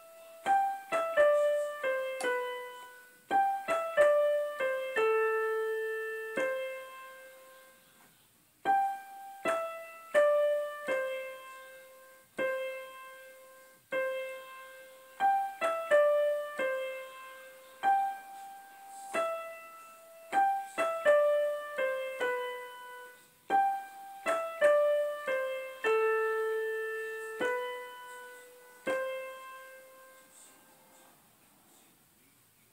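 A simple melody played one note at a time on a piano-voiced keyboard, in short descending phrases that repeat several times with brief pauses between them, each note struck and left to ring out.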